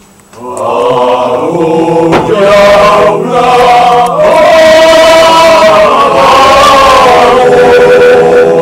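Slow singing in long, held notes, starting just after a brief pause at the very beginning.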